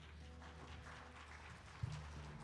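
The last low bass note of the worship band's song ringing out faintly and fading, with a soft thump near the end.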